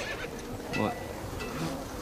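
Faint steady buzzing of insects in the outdoor background, with a thin high tone running through it. One short word is spoken about a second in.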